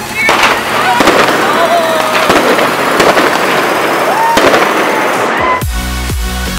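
Street fireworks and firecrackers going off in a dense, continuous crackle, with many sharp bangs and several rising whistles. Near the end the sound cuts abruptly to electronic dance music with a steady beat.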